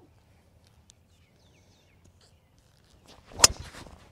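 A driver striking a golf ball off the tee: a single sharp crack near the end, the loudest sound here, followed by a short trailing tail.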